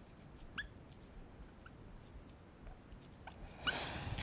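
Dry-erase marker writing on a whiteboard: faint, scattered short squeaks as the strokes are made.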